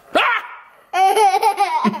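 A toddler boy laughing with a high-pitched voice: a short rising squeal, then, after a brief pause, a long wavering laugh.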